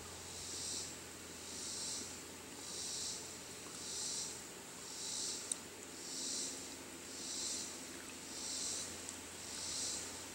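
Insects in a pulsing chorus, a high hiss swelling and fading about once a second without a break. A single short click about halfway through.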